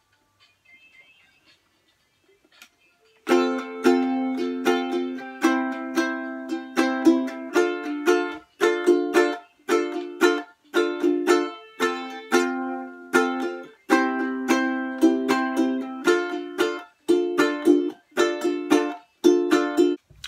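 Ukulele strummed in a funky, choppy rhythm through an F–C–D minor chord progression, starting about three seconds in after a near-quiet start. The chords are cut short, with brief muted gaps between groups of strums.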